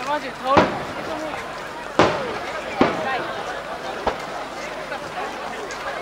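Aerial firework shells bursting: about four sharp bangs, the loudest a little after the start and about two seconds in, the last one fainter.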